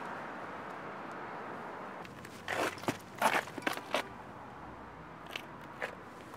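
Cloth rustling and scuffing as a cotton T-shirt is pulled on over other clothes: a cluster of short crunchy rustles between about two and a half and four seconds in, and two smaller ones near the end, over a quiet steady outdoor background.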